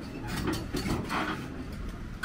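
Heavy machinery at work: a steady low engine rumble with short metallic squeaks and clanks.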